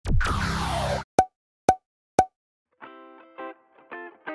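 Edited intro sound effects: a loud swoosh with a falling tone for about a second, then three short pops half a second apart. Music with plucked notes starts near the end.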